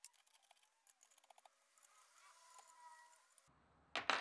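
Near silence, with faint scattered ticks and a sharper click right at the end as the steel table arm is handled against the grinder's platen.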